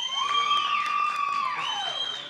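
Audience members cheering a graduate as her name is called: several long, high-pitched held cheers overlapping, the lowest dropping away near the end.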